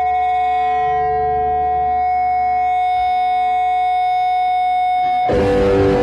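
Distorted electric guitar sustaining one steady, unwavering droning tone through the amp. About five seconds in, the drums and band hit together in a loud crash.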